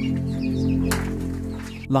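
Background music of sustained, held low chords, with hens faintly clucking over it and a single brief click about a second in.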